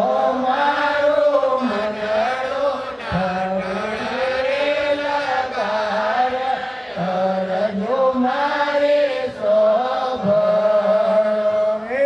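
A man singing a devotional chant in long, wavering held notes that glide between pitches.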